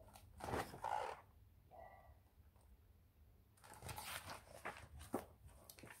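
Faint rustling of a picture book's paper pages being handled and turned. One short spell comes near the start and a longer run of short rustles about four seconds in.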